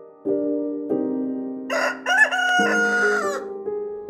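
A rooster crows once, in one call of nearly two seconds that rises, holds and falls off, starting about halfway through. It sounds over piano chords in the background music.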